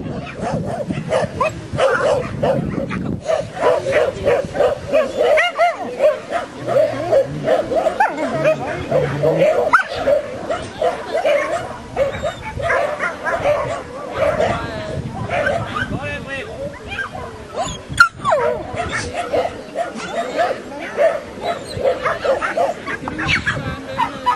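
A dog barking over and over in rapid, repeated barks, with people's voices underneath.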